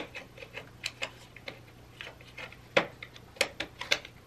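Scattered small clicks and scrapes of a cardboard advent calendar drawer being worked open by hand to get the candy out, with a few sharper clicks in the second half.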